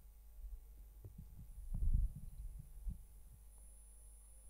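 Handling noise from a handheld microphone: soft, low, muffled thumps and rustles, thickest about two seconds in, over a faint steady hum.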